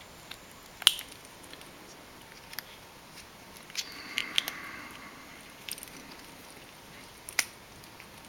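Rubber boot being worked by hand onto a small plastic door courtesy-light switch: a few light clicks and a soft rubbing of rubber on plastic. One click comes about a second in, a short cluster around four seconds in, and another near the end.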